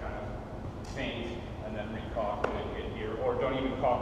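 Indistinct voices talking, with a single sharp knock about two and a half seconds in.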